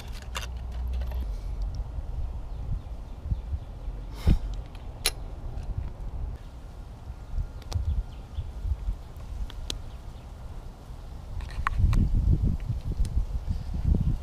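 Handling noise on the microphone: a low, uneven rumble with a few light clicks, one sharper click about four seconds in, and the rumble growing louder near the end.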